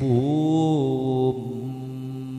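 A man's voice in melodic Arabic recitation, drawing out one long chanted note: the pitch dips at the start and then holds steady, and it drops in loudness about halfway through.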